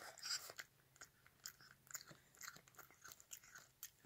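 A cat eating wet food from a metal bowl: faint, quick, irregular smacking and chewing sounds, with a louder cluster just after the start.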